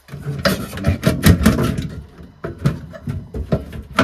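Front casing of an Ideal Logic combi boiler being unclipped and lifted off: a run of clicks, knocks and rattles from the clips and panel being handled.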